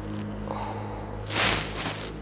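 A woman's short, forceful exhale, about a second and a half in, while she holds an intense stretch, over a steady low hum.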